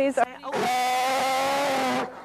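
A sea lion giving one long, steady call, its trained 'ah' on command, starting about half a second in.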